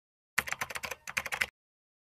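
Rapid keyboard typing, about a dozen quick clicks in just over a second with a short break in the middle, stopping suddenly.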